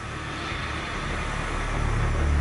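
A swelling rush of noise, like wind and surf, growing steadily louder as the opening sound design of a title sequence.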